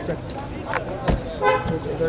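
A car door shutting with a thump about a second in, amid men's voices.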